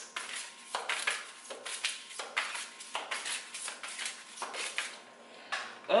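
An oracle card deck being shuffled by hand: a run of short card slaps and swishes, roughly two a second, easing off briefly near the end.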